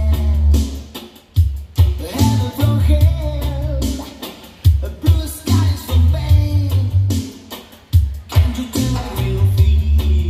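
A recorded song with singing, guitar and a heavy bass beat, played loud through a pair of RCF ART 910-A 10-inch active PA speakers as a sound test.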